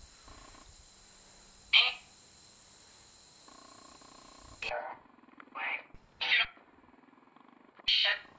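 NecroPhonic ghost-box app playing through a phone speaker: faint buzzing tones broken by short garbled voice-like fragments, one of them taken as the word "me".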